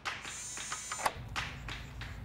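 Sesame smart lock's small motor whirring as it turns the door's deadbolt to unlock, with a high whine in the first second over a steady hum and a few faint clicks.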